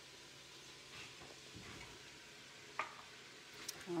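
Faint sizzling of browned Italian pork sausage in an enamelled pot, with a wooden spoon stirring through it and one sharp knock a little before the end.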